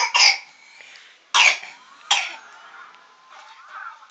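A baby coughing: two quick coughs at the start, then two more a bit under a second apart.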